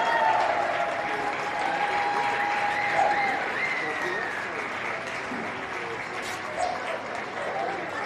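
Audience applauding, with voices calling over it; the applause slowly dies down.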